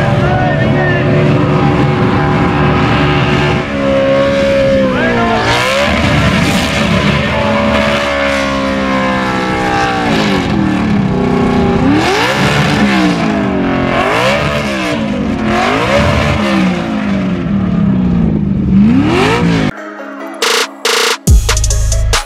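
A car engine held at high revs during a tyre-smoking burnout, over the noise of the spinning tyres. In the second half the revs rise and fall again and again. About twenty seconds in it cuts abruptly to electronic music with a heavy beat.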